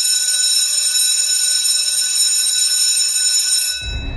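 A steady, high-pitched electronic ringing tone of several pitches sounding together, held without change until it cuts out near the end as a low rumble comes in.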